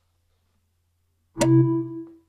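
Mac Finder's copy-finished alert: one short pitched chime about a second and a half in, ringing briefly and fading. It signals that the file copy has completed. Before it, near silence with a faint low hum.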